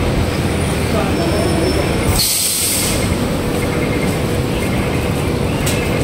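Busy city street traffic: a steady roar of passing vehicles, with a short high hiss about two seconds in.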